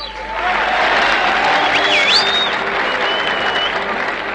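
Audience applauding, rising as the music stops, with a few shrill whistles about two seconds in and again near the end.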